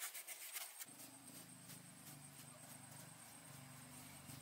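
Faint paintbrush strokes dabbing and scraping on a rough cement-and-stone pillar, several short strokes a second. About a second in they stop and a faint low hum takes over.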